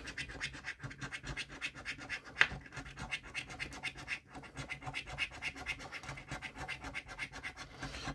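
A coin scraping the scratch-off coating from a scratchcard in rapid, repeated strokes, with one sharper scrape about two and a half seconds in.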